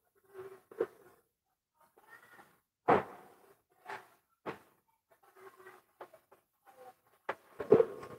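Faint handling noises: a handful of soft knocks and rustles from a handheld microphone being moved and gripped, the loudest knock about three seconds in.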